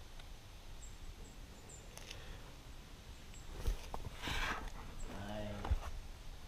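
A climber's effort sounds: a hard breath out about four seconds in and a short voiced grunt a second later, with a few low knocks of hands and gear against the rock. Faint high chirps sound in the first two seconds.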